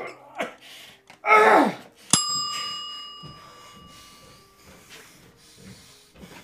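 A man's strained, breathy cry about a second in, then a single bright chime struck once, ringing out in several clear tones that fade over about two seconds.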